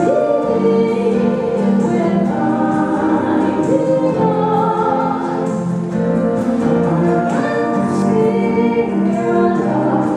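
A woman and a man singing a song together over an acoustic guitar.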